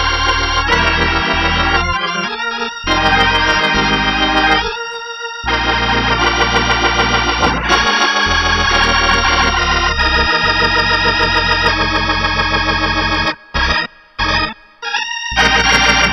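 Viscount Legend drawbar organ, a Hammond-style clonewheel, playing sustained extended gospel-jazz chords (E♭13, A♭♯11 13 sus2 sus4, B♭13) over bass pedal notes, with a steady waver in the tone. Near the end it plays several short, separated chord stabs.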